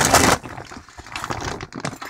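Rustling and crinkling of a large shopping bag and plastic-wrapped packages being handled, with a loud rustle in the first half-second, then softer crackles and light clicks.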